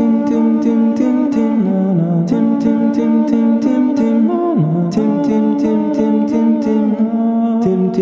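One man's voice layered into a classical-style a cappella male choir, singing sustained wordless chords in close harmony. A crisp tick keeps a steady beat about four times a second underneath.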